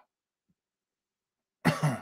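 Near silence, then a man's short cough near the end, in two quick parts.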